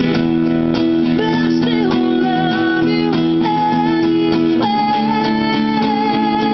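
Two acoustic guitars playing a slow song together, held notes ringing while one guitar picks single notes over the chords.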